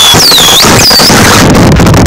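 Harsh noise music played at full level: a dense, distorted wall of noise with two high whistling glides that dip and climb back within the first second.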